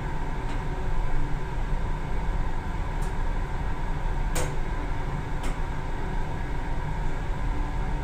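Toshiba Elemate Celebram VF passenger elevator car travelling down one floor, heard from inside the car: a steady low rumble with a faint high hum, and a few sharp clicks, the loudest about halfway.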